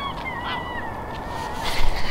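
A flock of waterbirds calling, with thin gliding honks and the loudest calls near the end, over a steady rushing background.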